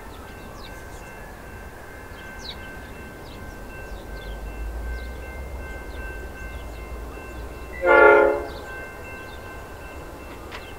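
Horn of a freight train's lead diesel locomotive, G class G536: one short blast about eight seconds in, over the low rumble of the approaching locomotives' engines.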